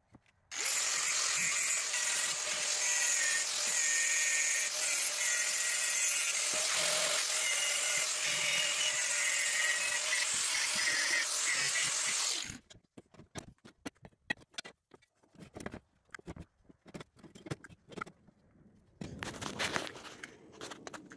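Cordless power tool running steadily for about twelve seconds while cleaning up steel motor mounts, then cutting off abruptly. Scattered clicks and knocks of handling follow.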